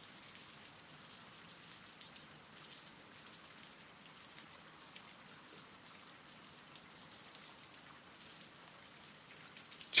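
Faint, steady rain, with the odd drop ticking through the hiss.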